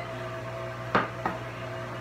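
Stand mixer motor running steadily with a low hum while its paddle beats hot liquid into flour for a dough. A sharp knock comes about a second in, with a lighter one just after.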